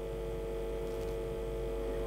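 Steady electrical hum of a few fixed tones from an open telephone line on air, with the call not yet answered.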